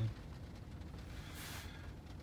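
Low, steady background noise in a car cabin, with a brief faint hiss about one and a half seconds in.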